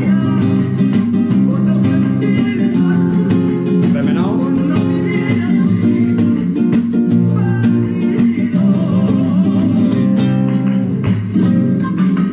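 Red Spanish guitar by Córdoba luthier Manuel Ordóñez, capoed, strummed by hand, playing chords in a steady rhythm with many quick strokes.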